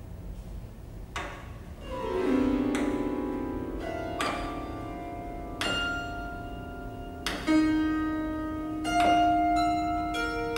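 Grand piano notes sounded one after another, about eight attacks starting about a second in, each left to ring so the tones overlap and sustain.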